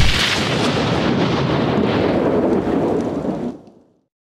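Logo-reveal sound effect: a sudden hit at the start, then a steady noisy rush that fades out in the last half second.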